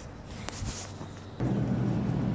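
Faint background noise with a single click about half a second in, then a steady low hum inside a large store that starts suddenly about one and a half seconds in.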